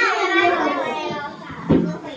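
Young children's voices chattering over one another, with a single thump near the end.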